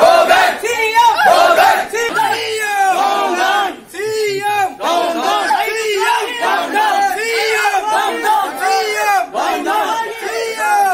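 A crowd of protesters shouting slogans together in loud, repeated phrases, with a brief break about four seconds in.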